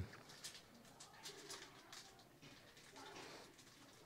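Near silence: room tone, with a faint low hum or murmur twice, about a second and a half in and again after three seconds.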